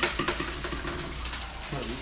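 A single sharp clack of metal, as of the foil-lined pan on the oven rack, followed by a man's drawn-out hesitating 'uhh' lasting about a second.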